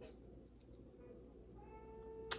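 Near silence: room tone with faint, steady tones of soft background music.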